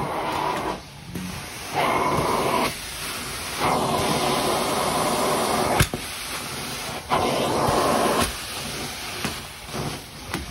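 Carpet-cleaning extraction wand on a vacuum hose, working the carpet: a steady rush of suction that surges louder in four strokes of one to two seconds as the wand is pulled across the pile, with a sharp click about six seconds in.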